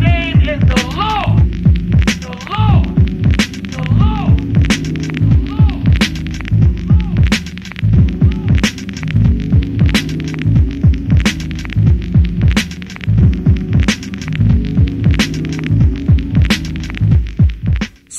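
Slow hip hop instrumental beat: a heavy, looping bass line under drum hits about every three quarters of a second, with gliding, swooping tones in the first few seconds. The beat drops out briefly at the very end.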